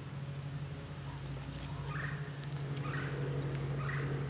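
A steady low hum under a thin high whine, with a few faint short chirp-like calls about two, three and nearly four seconds in.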